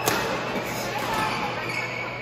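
A badminton racket strikes a shuttlecock once, a sharp crack just at the start, with voices of players in the hall behind it.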